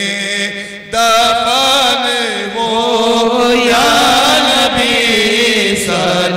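Men's voices chanting a devotional Urdu salaam to the Prophet through a microphone and PA, in long held notes with a wavering, ornamented pitch. The singing drops briefly just before a second in, then the next line begins.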